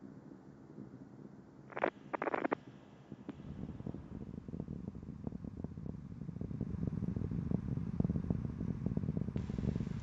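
Low rumble with dense crackling from the space shuttle's rocket exhaust during ascent, with its solid rocket boosters and main engines at full thrust. It fades in about three seconds in and grows steadily louder.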